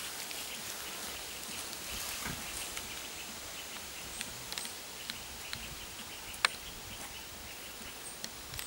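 Outdoor ambience: a steady hiss with a few short, sharp clicks a little past the middle, the loudest about six and a half seconds in.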